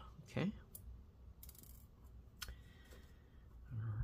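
A few faint clicks and a short scratch from a small Torx T5 screwdriver being picked up and set into the hinge screws of a MacBook Air, with a sharper click a little past halfway.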